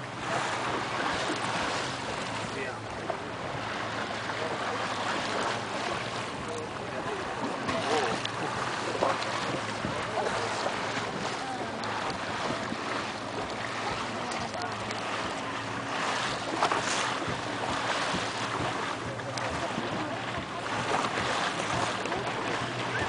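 Boat under way: a steady engine hum under water rushing and splashing along the hull, with wind buffeting the microphone.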